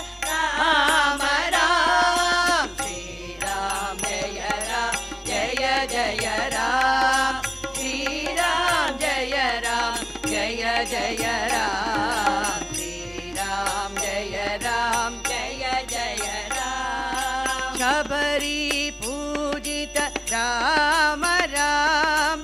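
A women's group singing a devotional bhajan in chorus, accompanied by tabla strokes and a harmonium's held notes.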